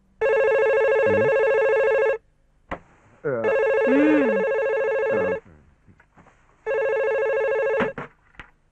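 Landline telephone ringing: three rings of about two seconds each with short gaps between, the third cut short near the end as the handset is lifted.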